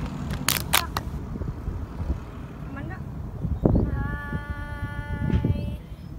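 A woman's voice starts a long held sung note about four seconds in, over a steady low rumble, with a few sharp clicks in the first second.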